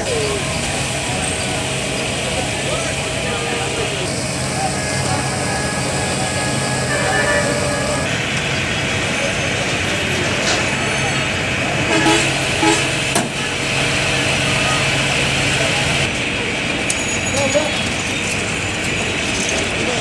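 Busy street noise: a crowd of voices talking over running vehicle engines, with a steady low engine hum and occasional vehicle horns.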